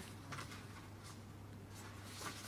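Faint rustling of paper ballot slips being handled during a vote count, a couple of soft brushes over a low steady room hum.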